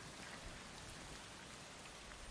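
Faint steady hiss with a couple of faint short ticks.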